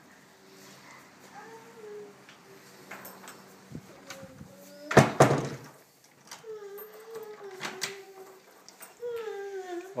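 A single loud bang, like a door knocking shut, about five seconds in, in a small room; soft wordless vocal sounds waver on and off around it.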